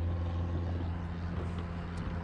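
A steady low drone of a distant engine, unchanging in pitch.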